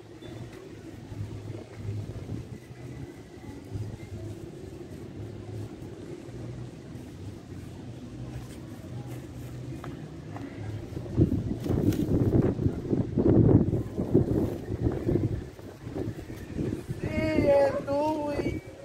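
Outdoor background noise: a steady low rumble, which turns louder and uneven, with a few knocks, from about eleven seconds in. A voice near the end.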